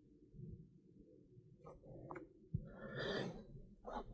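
Faint handling noise of a rider climbing onto his bicycle, heard through the handlebar-mounted camera: a few light clicks, a knock about two and a half seconds in, then about a second of rustling. A low steady rumble, like wind on the microphone, lies under it all.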